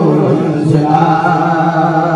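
Men chanting a Mouride religious khassida together into microphones, in long, held, sustained notes.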